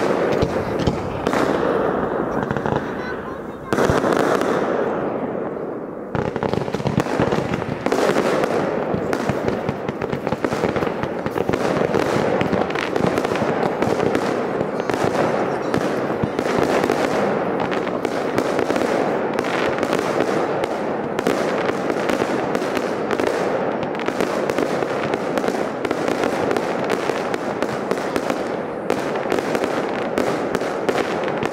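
Fireworks display: aerial shells bursting in rapid, overlapping bangs with dense crackling. A loud burst about four seconds in trails off in a fading hiss, then from about six seconds the barrage turns into non-stop bangs and crackle.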